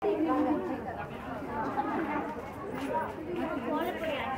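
Market crowd chatter: several voices talking over one another, none standing out.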